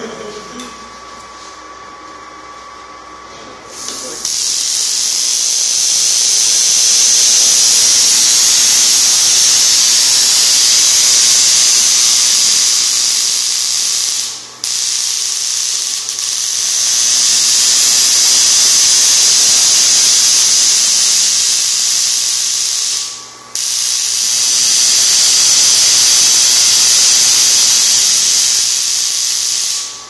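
Homemade Tesla coil firing: a loud, steady hiss that starts about four seconds in, cuts out for a moment twice, and stops near the end.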